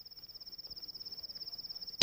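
Cricket chirping in a fast, even, high-pitched trill that grows steadily louder, the night-time ambience of a film soundtrack.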